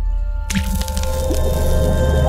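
Logo-intro sound effect for an ink-splat animation: a low rumble builds, a sharp crack hits about half a second in, then a dense crackle runs over a few held musical tones.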